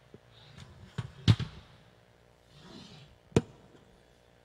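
A few sharp knocks and thumps picked up by a microphone being handled at a table, the loudest about a second in and another sharp one near the end, with a faint rustle between them.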